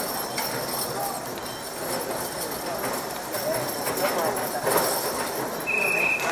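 Hooves of a team of draft horses stepping on packed dirt, against a steady murmur of crowd chatter.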